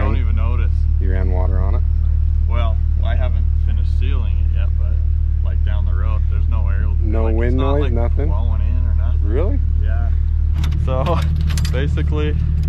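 A man talking over the steady low hum of an idling vehicle engine. Near the end there are a few sharp metallic clicks from a roof-panel latch being handled.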